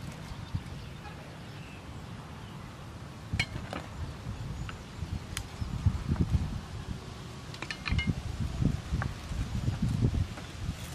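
Kitchen utensils being handled: scattered light clinks and clicks of a spoon in a small bowl and a cleaver on a wooden board, with uneven low knocks in the second half over a steady low rumble.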